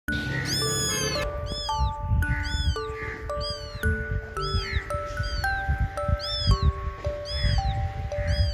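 A newborn kitten, only a few days old with its eyes not yet open, crying over and over: short, high meows that rise and fall, coming about every half second. Background music with a slow melody plays under it.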